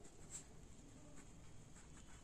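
Near silence with faint, scattered scratches of a ballpoint pen writing on notebook paper.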